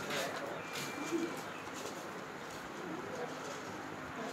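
A bird cooing in the background, with a brief thin, steady high tone about a second in.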